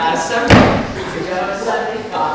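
A single loud thump or slam about half a second in, ringing briefly in a large hall, over voices talking.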